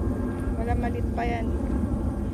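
Steady low outdoor rumble with two short vocal sounds from a person, about half a second and just over a second in.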